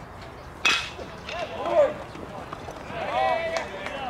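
A metal baseball bat strikes a pitched ball with one sharp, ringing ping about two-thirds of a second in. Shouted calls from players follow, once shortly after the hit and again near the end.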